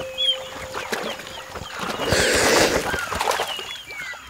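Water splashing and wings flapping as black vultures scramble on a floating caiman carcass, with the loudest burst of splashing about two seconds in. Small birds chirp in the background.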